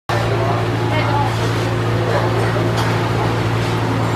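Steady low machine hum, with people talking in the background.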